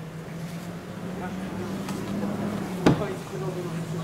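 Steady low hum of an idling truck engine, with a single sharp knock about three seconds in and faint men's voices.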